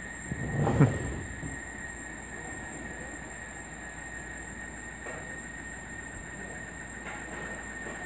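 Cicadas making a continuous, ear-piercing high whine, a steady tone with a second, higher tone above it. There is a brief low thump about a second in.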